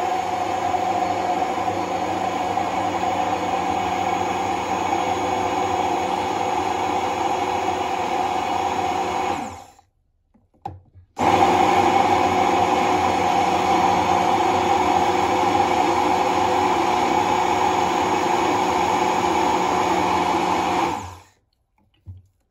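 Hand-held immersion blender running steadily in a tall beaker, emulsifying eggs, lemon and sunflower oil into mayonnaise as the oil is poured in. It stops about ten seconds in, stays silent for about a second, then starts again and runs until shortly before the end.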